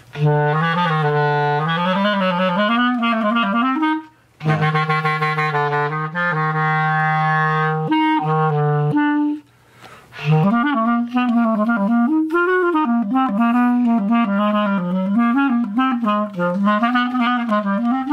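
Clarinet played in its low register in three phrases, breaking off about four and about nine seconds in. The middle phrase holds long, steady low notes.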